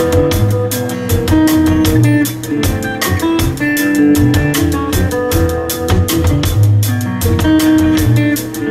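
Live instrumental trio of acoustic guitar, violin and drum kit playing a funky tune over a steady drum beat.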